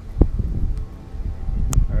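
Wind buffeting the microphone in a low rumble, with a dull thump just after the start and a sharp click near the end.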